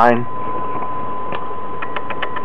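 Homemade Newman-type permanent-magnet motor running, with its magnet rotor spinning and its commutator wire striking. It makes a steady whine over a continuous mechanical hiss, with a few faint ticks in the second half.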